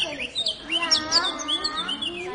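Birdsong: many quick, high chirps and short whistles in rapid succession, with a lower voice-like sound underneath.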